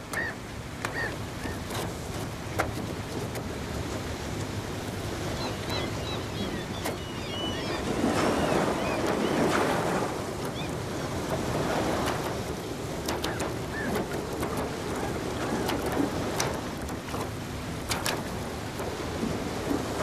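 Sea waves and wind, swelling louder about eight to ten seconds in, with a few faint high chirps and scattered clicks.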